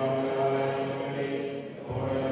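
A man's voice chanting a funeral prayer on long held notes, pausing briefly near the end.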